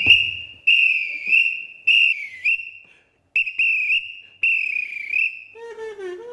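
A plastic sports whistle blown in about five high, warbling blasts, with a short pause about halfway. Near the end a lower, softer tone begins.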